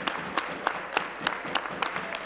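Applause from a group of legislators: a patter of hand clapping with individual sharp claps standing out.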